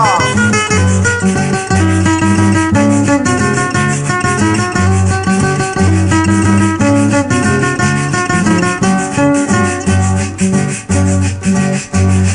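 Instrumental intro of a Colombian música parrandera song: acoustic guitars playing a bouncy melody over a bass line, with a shaker keeping a steady rhythm.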